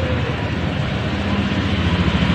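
Steady low rumble and hiss of a motor vehicle engine running nearby, with a constant hum.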